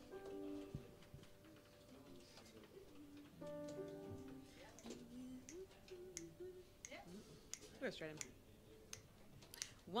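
Quiet room with two soft sustained instrument chords, one right at the start and another about three and a half seconds in, and faint voices.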